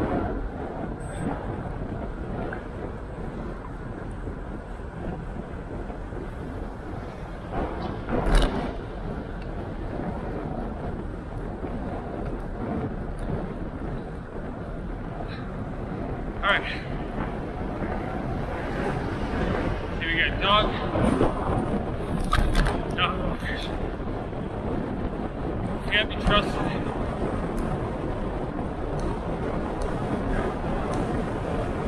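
Steady wind rumble and road noise on a handlebar-mounted action camera on a moving bicycle, with a few sharp knocks, the loudest about eight seconds in.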